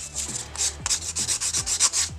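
Pink nail buffer block rubbing quickly back and forth over a cured top-coat layer on a nail tip, a run of short scratchy strokes about five a second. The layer is being smoothed before another coat goes on.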